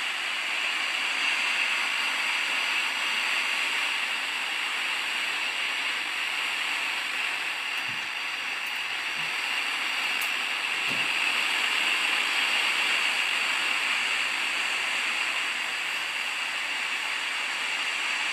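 Portable FM radio's speaker giving a steady, even hiss of static, tuned to 103.3 MHz with no station coming through, and two faint knocks about eight and eleven seconds in.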